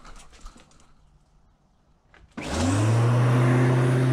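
Lawnmower motor starting up about two and a half seconds in, just after a small click: its pitch rises quickly, then it runs loud and steady.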